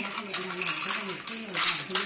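Plastic toy dishes and cups clattering as a toddler handles them on a tile floor. There are a few light knocks, the loudest near the end.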